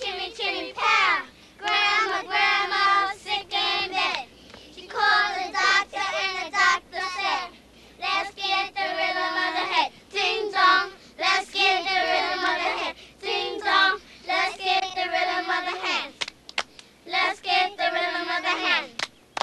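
Young girls chanting a playground hand-clapping rhyme together in a singsong rhythm, with a few sharp hand claps near the end.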